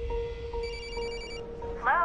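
A mobile phone ringing: one short burst of rapid electronic trilling a little after half a second in, over a steady held music tone.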